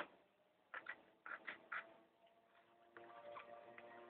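Faint utility-knife blade drawn through a sheet of craft foam: a sharp click at the very start, then a handful of short scraping strokes within about a second.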